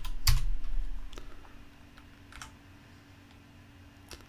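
Computer keyboard keystrokes: a few key presses near the start, the loudest about a third of a second in, then two fainter single clicks and one more at the end. A faint steady hum runs underneath.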